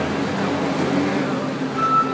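Case 721F wheel loader's diesel engine running under load as the bucket is pushed into a pile of fertilizer: a steady engine sound whose pitch shifts slightly.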